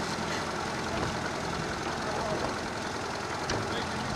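Towing motorboat's engine running steadily, a low even hum under a constant hiss.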